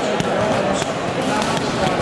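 Several people talking, with repeated thuds of impacts among the voices.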